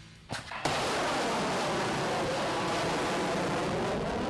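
Missile launch from a Bastion-P coastal launcher, an Onyx anti-ship cruise missile leaving its tube on its solid-fuel booster. The launch comes in suddenly about half a second in, then the booster's rushing noise holds steady.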